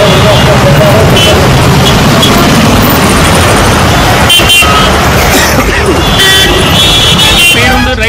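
Dense road traffic in a jam, engines and tyre noise in a steady din, with vehicle horns honking several times, longest about four seconds in and again near the end.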